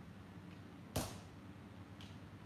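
A single hand-hammer blow on red-hot steel at the anvil about a second in, with a short metallic ring, as an axe head is forged. A steady low hum runs underneath.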